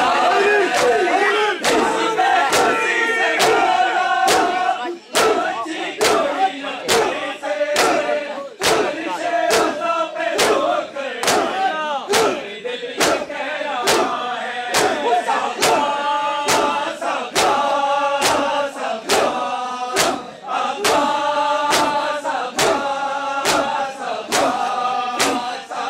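A group of men chanting a Muharram lament while beating their chests with open hands in matam. The hand slaps keep a steady rhythm of about three every two seconds and grow sharper after the first few seconds.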